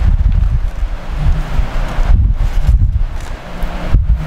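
Air buffeting the microphone: a loud, uneven low rumble with a fainter hiss above it.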